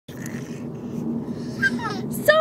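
Steady low rumble of a car's cabin on the move, with a brief high little vocal sound near the end.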